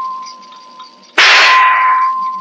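A shot hitting a metal shooting-gallery target: a sharp clang about a second in that rings on at one steady pitch and dies away. The ring of an earlier hit is still fading at the start.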